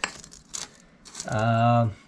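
Light metallic clicks and clinks as a braided flexible exhaust pipe section is handled on a concrete floor, followed by a man's drawn-out hesitation sound in the second half.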